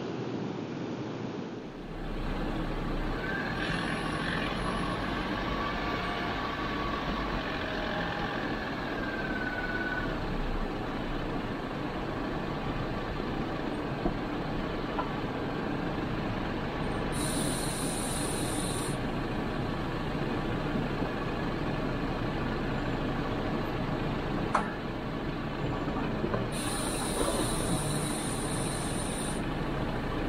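Jeep Wrangler JL driving slowly over a rough dirt trail: steady engine, drivetrain and tyre noise. A faint wavering whistle comes in between about 3 and 10 seconds, and two stretches of extra high hiss come later.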